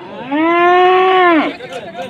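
A calf moos once: one loud call of just over a second. Its pitch rises at the start, holds and drops away at the end.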